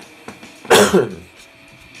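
A man coughs once, a short harsh burst about two-thirds of a second in.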